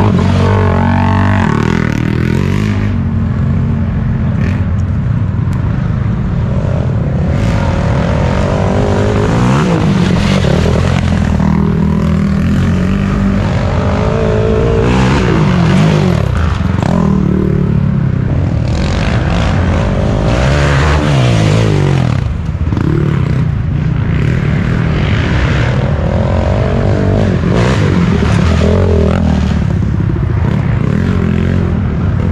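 ATV engine revving hard, its pitch climbing and dropping again and again every few seconds, with scattered knocks and clatter.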